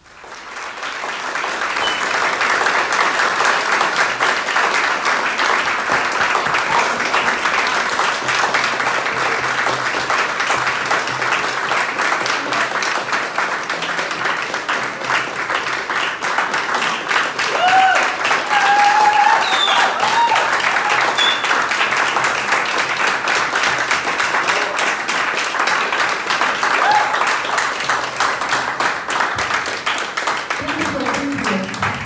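Large audience applauding. The clapping starts suddenly, swells over the first couple of seconds, then holds steady, with a few short calls from the crowd a little past the middle.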